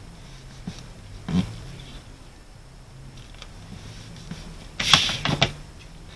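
Paper card being handled on a cutting mat: a soft tap about a second and a half in, then a short cluster of rustles and taps near the end as the card is picked up.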